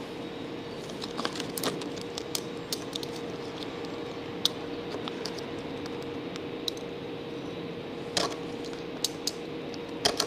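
Hands rubbing and pressing self-adhesive vinyl wrap film onto a shelf edge: scattered small clicks and crackles from the film and its paper backing, over a steady low hum.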